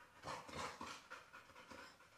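A black Labrador panting faintly: quick, soft breaths a few times a second.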